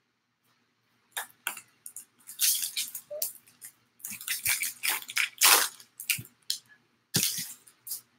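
A baseball card pack's wrapper being torn open and crinkled by hand: a run of irregular crackles and rustles starting about a second in, with one more crinkle near the end.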